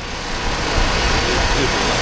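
Road traffic noise: a steady wash of vehicle engines and tyres on a busy street.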